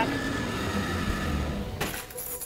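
A steady low rumble, cut off by a sudden sharp noise near the end.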